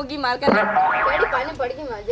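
A short cartoon-style comedy sound effect that starts suddenly about half a second in and fades within about a second, with women's voices before and after it.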